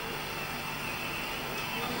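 A pause in a man's speech over a microphone, leaving a steady hiss of room noise.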